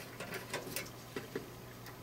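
Faint, scattered light clicks and rustles of speaker wire being handled and pushed into the spring-clip speaker terminals on the back of a home-theater receiver.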